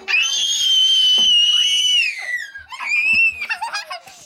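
A young girl's high-pitched playful scream, held for about two seconds and dropping at the end, followed by a shorter squeal about three seconds in.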